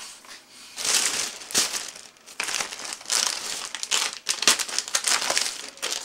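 Thin plastic shopping bag crinkling and rustling as a hand rummages inside it, in irregular bursts of crackle with a brief lull about two seconds in.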